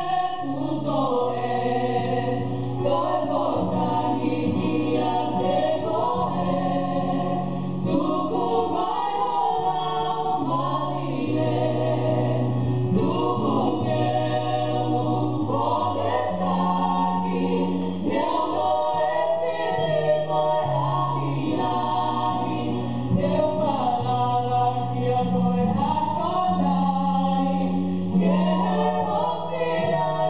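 Female vocal trio singing a Tongan hymn in close harmony, over sustained low bass notes that change every few seconds.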